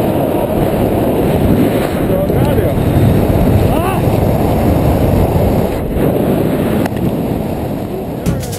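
Wind buffeting the microphone of a handheld camera during a tandem parachute descent under an open canopy: a loud, steady rumble with faint voices under it.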